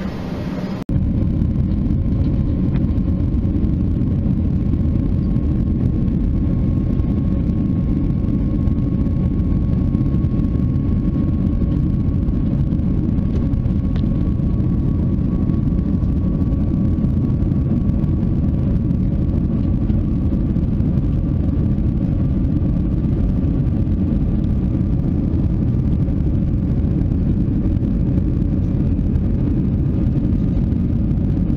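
Steady loud rumble of an airliner's jet engines and rushing air heard from inside the cabin as the plane climbs after takeoff, with a faint steady whine above it. It starts abruptly about a second in, after a brief quieter stretch of cabin sound at the gate.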